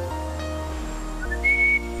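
Television weather-segment jingle: held chords over a low bass note that steps down twice, with a short rising whistle-like melody ending on a held high note near the end.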